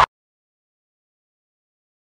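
Dead silence: the sound track is blank, just after loud noise cuts off abruptly at the very start.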